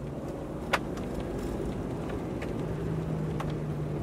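Steady low rumble and hum of a motor vehicle, with a few faint clicks, one sharper about a second in.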